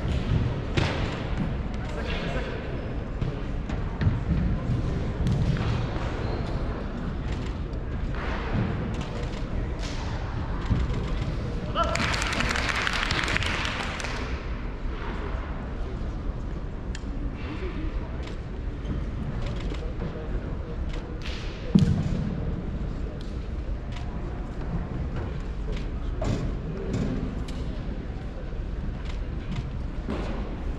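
Indistinct voices in a large hall, with occasional thuds of a martial artist's feet landing and stamping on the carpeted floor, the sharpest about four seconds in and just before twenty-two seconds. A burst of noise lasts about two seconds near the middle.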